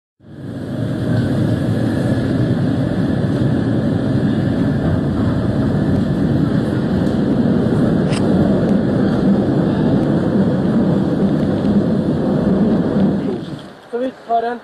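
Steady low rumble of a vehicle in motion, heard from inside. It fades in at the start and drops away about a second before the end.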